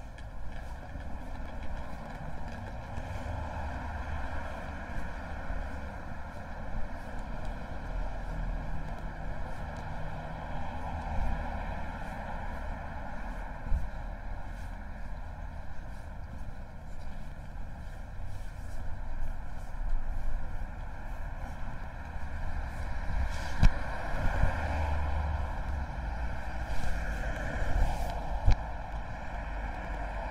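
Outdoor street ambience: a steady hum of road traffic with a low rumble, broken by a few sharp knocks.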